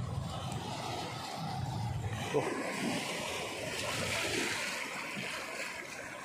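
Shallow sea water washing over a rocky reef flat, with surf breaking further out: a steady rushing that swells a little in the middle.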